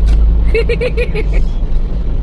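Steady low rumble inside a car cabin, with a short run of laughter, five quick even ha-ha pulses, about half a second in.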